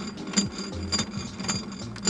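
Crank handle turning a camper trailer's wind-down stabilizer leg, with irregular metal clicks about two or three times a second.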